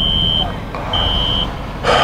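A Nissan car's dashboard warning chime inside the cabin: a high, steady beep about half a second long, repeating about once a second, three times, over a low rumble.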